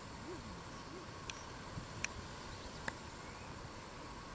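Faint low hooting calls, two short notes that rise and fall in the first second, then three sharp ticks, over a steady background hiss.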